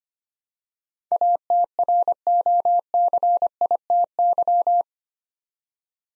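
Morse code sent as a single steady beep keyed on and off at 25 words per minute, spelling the word "ATROCITY". It starts about a second in and stops near five seconds.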